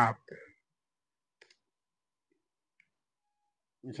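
Near silence with a faint click about one and a half seconds in, and a tinier tick or two later, from typing a search on a computer.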